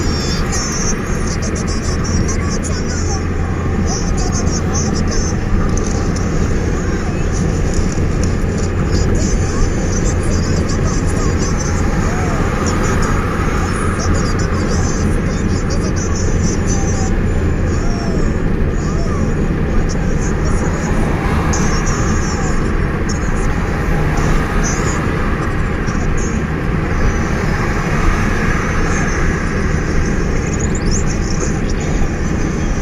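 Steady road and engine noise heard inside a moving car's cabin, with a low engine drone that drops away about eighteen seconds in.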